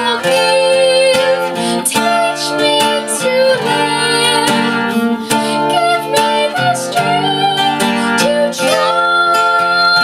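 A woman singing solo over a strummed acoustic guitar, holding a long high note near the end.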